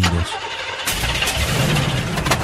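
Sound effect of a car engine cranking roughly, with uneven low pulses, standing for a cheap used car breaking down.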